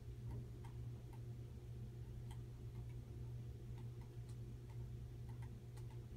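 Faint, irregularly spaced clicks, some in quick pairs, over a steady low hum.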